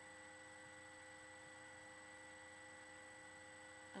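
Near silence: room tone with a faint, steady electrical hum and hiss.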